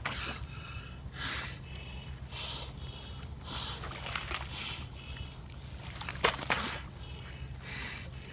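A swimmer breathing hard and rhythmically through a snorkel, about one breath a second, with water sloshing around him. About six seconds in there are two sharp cracks as plates of lake ice are broken.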